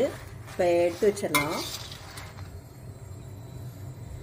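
A steel spoon scraping and clinking against an iron kadai as dry red chillies are stirred, the chillies fully dry-roasted. The clinks come in the first two seconds; after that only a low steady hum remains.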